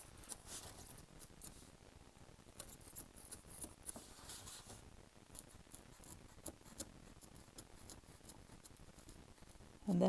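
X-Acto craft knife scoring the paper backing of foam board with short little cuts: faint, irregular scratchy ticks as the blade breaks the surface.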